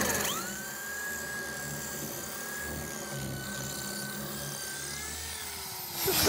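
Electric hand drill with an ARTU titanium-carbide-tipped multi-purpose bit boring into concrete with blue-metal aggregate. The motor spins up at the start, then runs steadily with a high whine over the grinding of the bit, its pitch sagging slightly near the end.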